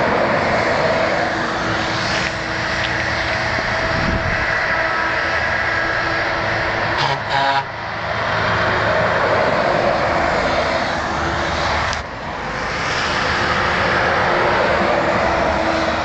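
Tractor-trailer trucks driving past close by, one after another: loud engine and tyre noise that eases briefly between them.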